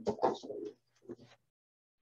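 A woman's voice drawing out a single word, then a few faint brief sounds about a second in.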